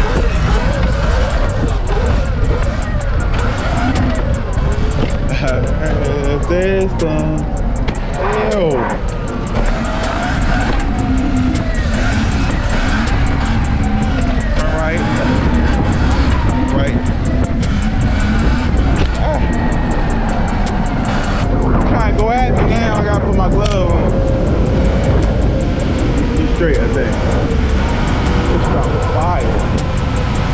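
Steady wind and road rumble from riding a dirt bike on city streets, with wind buffeting the handlebar-mounted camera's microphone. Music and voices run underneath.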